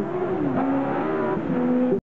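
Racing autocross buggy engines revving on a dirt track, the engine note dipping about half a second in and then climbing again as the throttle is worked.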